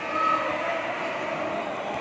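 Steady crowd din filling a large indoor gymnasium at a basketball game.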